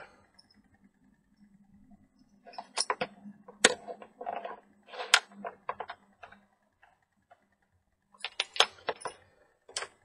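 Scattered light clicks and knocks from hands handling a glass neon indicator tube and small objects on a tabletop, coming in two clusters from about two and a half seconds in and again near the end.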